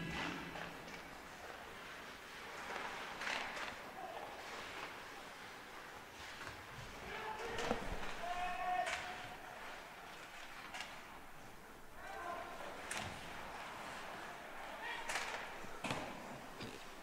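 Faint ice hockey play sounds in an indoor rink: scattered sharp clacks and thuds of sticks, puck and boards, with players' voices calling out now and then.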